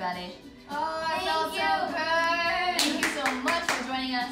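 Music with a singing voice, followed in the last second or so by a quick run of hand claps.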